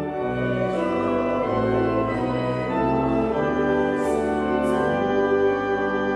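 Church organ playing slow, sustained chords, with the bass notes changing every second or so.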